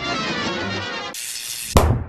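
A short edited music sting. Its dense musical burst gives way to a band of bright hiss, and it ends in a heavy boom hit near the end, which is the loudest moment.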